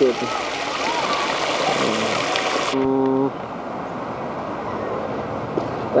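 Fountain jets splashing into a basin, a steady hiss of falling water that cuts off suddenly about three seconds in, leaving a quieter outdoor background.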